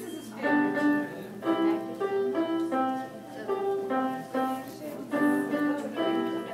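Electronic keyboard playing a simple melody one note at a time, about two notes a second, in short phrases with brief pauses between them.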